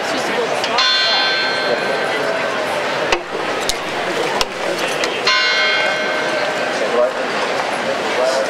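A bell ringing out twice, about four and a half seconds apart, each strike fading away over about two seconds, over a steady murmur of crowd chatter. Three short clicks come in between the strikes.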